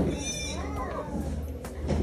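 A high-pitched voice sliding up and down in pitch over background music, with a brief shrill squeal at the start.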